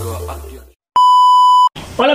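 Electronic intro music fading out, then a short gap and a single loud, steady beep of under a second that cuts off sharply: the 1 kHz tone used as a censor bleep.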